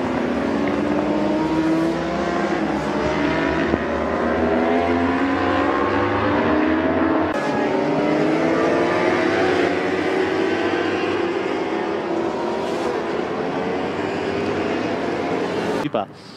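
Racing motorcycle engines on the circuit, several overlapping, each one's pitch sliding up and down as the bikes go by.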